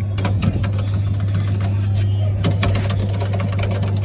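A steady low electrical hum from the powered kiddie ride, with a run of short clicks and knocks as a hand presses and taps at its control panel; the start button is jammed, so the presses do not start the ride.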